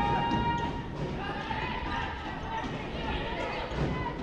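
Futsal match sounds on a wooden indoor court: the ball being kicked and bouncing on the floor, with voices from players and crowd.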